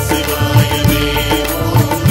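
Instrumental interlude of a Tamil Shaiva devotional song between sung verses: a steady drone under a repeating melodic line, with low drum beats.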